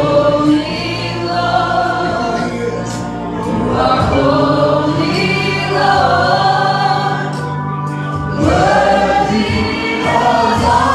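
Gospel worship song performed live: a man leads the singing on a handheld microphone with a group of women singing backup, over a band with steady sustained bass notes.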